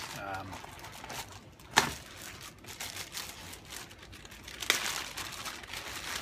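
A plastic bag of pipe tobacco crinkling as it is handled, with a sharp tap about two seconds in and a smaller one near five seconds.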